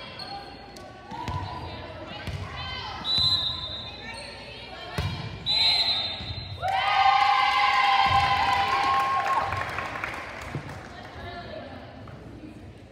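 Volleyball match sounds: a few ball strikes and bounces on the hardwood, and two short shrill whistle blasts about three and five and a half seconds in. From about six and a half seconds there are several seconds of loud shouting and cheering voices.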